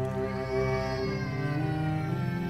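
Slow bowed-string score music with sustained low cello notes. About half a second in, a high cry-like note slides up, then falls away.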